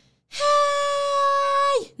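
A woman's voice holding one long high note without words for about a second and a half, dropping in pitch as it ends.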